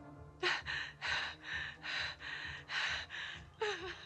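A terrified woman panting in rapid, gasping breaths, about two a second. Near the end one gasp turns into a voiced whimper with a falling pitch.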